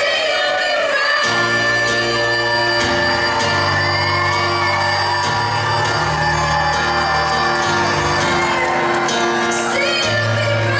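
A woman singing a pop song live while accompanying herself on piano, held sung notes over steady piano chords and a bass line that changes every second or so.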